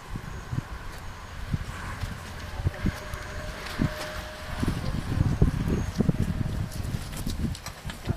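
Irregular low thumps and rumble on the camera's microphone, heaviest in the second half, typical of wind buffeting and handling noise.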